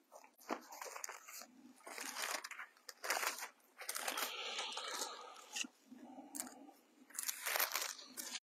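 Thin Bible pages being leafed through, a quiet run of irregular paper rustles and crinkles as a lost place is searched for.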